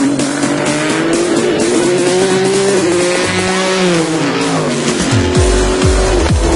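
Race car engine climbing steadily in pitch as the car accelerates, then dropping away about four seconds in. Background electronic music runs underneath.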